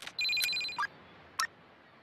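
A telephone ringing with a trilling two-tone ring, one burst of about two-thirds of a second, followed by two short clicks.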